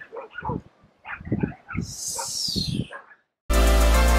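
A man laughing in short bursts, then a moment of silence before loud music cuts in about three and a half seconds in.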